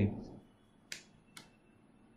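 Two short, sharp clicks about half a second apart, after the tail of a spoken word.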